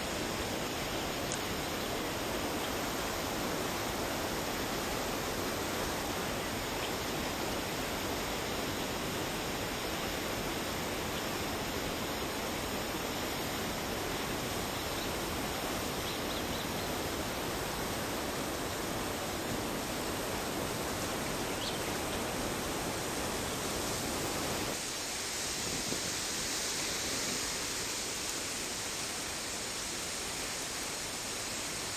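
Steady rush of water tumbling through the weir outflow. Near the end the low rumble drops away and a brighter hiss takes over.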